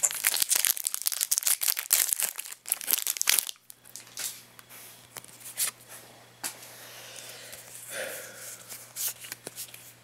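Foil booster pack wrapper being torn open and crinkled for about the first three and a half seconds, then quieter scattered clicks and rustles of the trading cards being handled and fanned.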